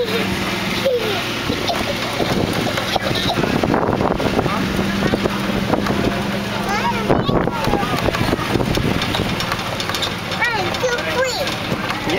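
Engine of a slow-moving ride-on train running steadily, with people's voices around it.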